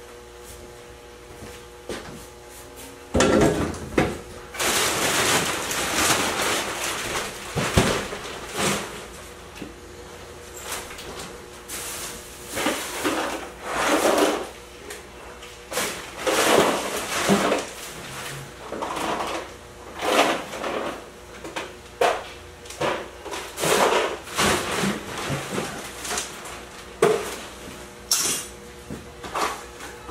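Irregular clattering, knocking and rustling of household junk being picked up, shifted and bagged by hand, with a few louder knocks and a faint steady hum underneath.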